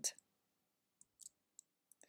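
Near silence with a few faint, short clicks, starting about a second in and coming again near the end.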